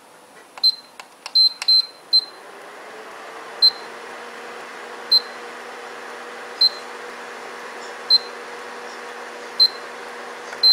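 Induction hob's control-panel beeps: a few quick button-press beeps with clicks in the first two seconds, then a steady hum sets in while the hob beeps once about every second and a half. The repeated beeping is the hob refusing to start, because the load is more or less shorting out its primary coil.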